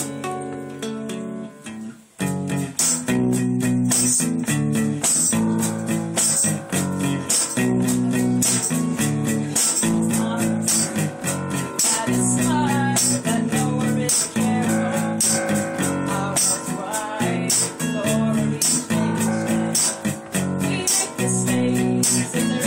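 A small band playing live, with electric and acoustic guitars strumming chords over a steady beat of sharp high percussion strokes. The music thins out in the first moments, and the full band comes back in about two seconds in.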